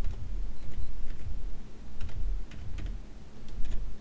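Typing on a computer keyboard: a run of irregular keystroke clicks over a low background hum.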